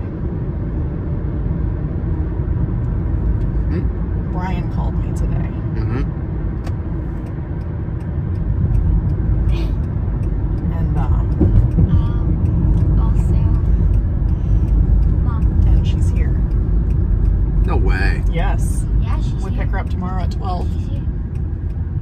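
Steady low road and engine rumble inside a moving car's cabin, with a few quiet snatches of talk over it.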